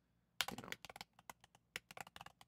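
Typing on a computer keyboard: a quick, irregular run of faint keystrokes starting about half a second in.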